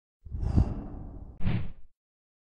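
Intro sound effect: a whoosh with a deep low hit about half a second in, then a second, shorter whoosh-hit about a second later, cutting off just before the end.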